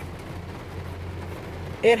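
Heavy rain falling on a car's roof and windshield, heard from inside the cabin as a steady even hiss over a low steady hum; a voice starts near the end.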